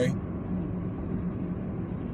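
Steady road noise and engine hum inside the cabin of a car moving along a highway.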